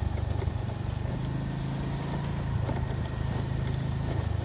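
Motorcycle engine running steadily at low speed.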